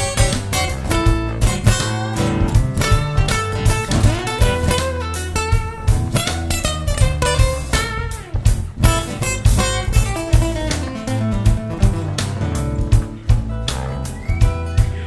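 Live blues played on a steel-string acoustic guitar with electric bass and drums: an instrumental guitar passage of quick picked notes over a steady bass line, with no singing.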